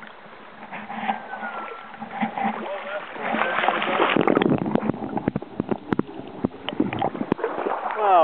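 Water splashing and gurgling around a waterproof camera dipped under the surface of a shallow river, with a burst of sharp knocks and sloshes from about three seconds in.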